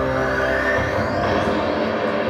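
Electronic music with sustained synth tones and a rising sweep building over the first second and a half, as for a product reveal.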